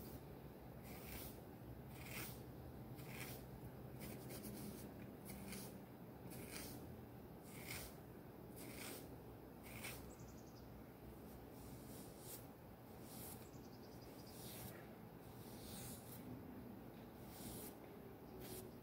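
Hairbrush strokes through hair, faint, repeating about once or twice a second, with a low steady room hum underneath.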